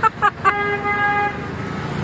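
A vehicle horn sounds one steady honk of about a second, starting about half a second in, over a low hum of street traffic.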